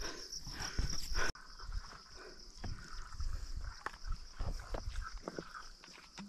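Insects droning steadily in a high band, louder for the first second and a bit and then fainter after an abrupt change, with scattered light knocks and rustles.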